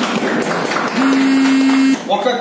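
A small group of people clapping, with a steady low tone sounding alongside in the second half.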